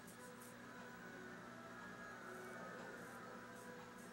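Very quiet room tone with a low, steady electrical hum.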